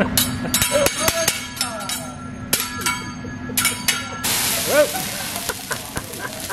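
A hibachi chef's metal spatula clacks and scrapes on the steel teppanyaki griddle in a quick, irregular run of sharp strikes. About four seconds in, a steady loud sizzling hiss takes over as flames flare up on the griddle.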